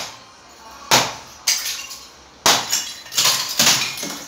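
Hammer striking a wall of hollow clay bricks and breaking them apart: about five sharp blows, half a second to a second apart, each with a brittle crack and clatter of brick pieces.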